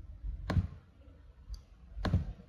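Computer mouse clicks picked up by a desk microphone: one sharp click about half a second in, a faint tick about a second later, and another sharp click at the end, over a low background rumble.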